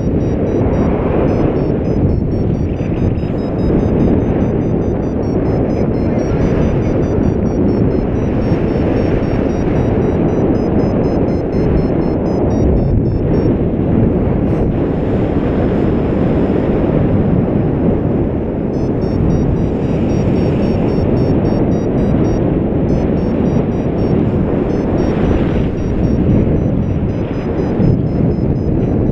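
Airflow buffeting the camera microphone of a paraglider in flight: a loud, steady, low rush of wind noise.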